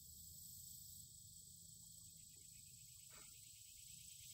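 Near silence: faint steady outdoor background, with one faint brief sound about three seconds in.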